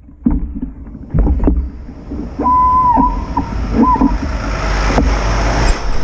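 A heavy truck drawing up and passing close alongside, its engine rumble and road noise building over the second half, over wind rumble on the microphone. A few sharp knocks come in the first second and a half, and a high, steady squeal sounds in three short pieces around the middle.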